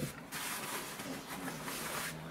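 Large nylon backpack being handled: its fabric and straps rustle and rub under the hands in a steady stretch of noise that starts shortly after the beginning.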